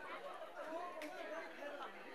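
Faint background chatter of several people talking.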